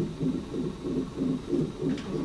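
Fetal heart monitor's Doppler speaker playing the baby's heartbeat during labour: rapid, even whooshing pulses.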